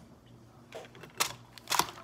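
Clear plastic food-container lid being handled, giving two sharp clicks about half a second apart, like the lid's latches snapping.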